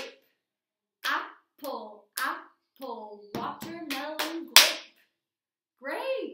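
A body-percussion rhythm: a woman claps her hands and chants short fruit words in time, one word every half second or so. The loudest, sharpest clap falls about four and a half seconds in, on the last beat of the phrase.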